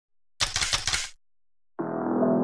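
A quick burst of about seven gunshots in under a second, as a sound effect, then a short silence. Keyboard music starts just before the end.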